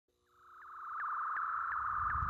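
Synthesized electronic intro tone, a steady high sine-like note swelling in, with short rising chirps repeating about three times a second.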